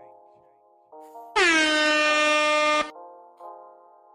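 Air-horn sound effect of the kind used in DJ drops: one blast lasting about a second and a half, its pitch dipping slightly at the start and then holding steady. It sounds over a quiet, sustained synth chord.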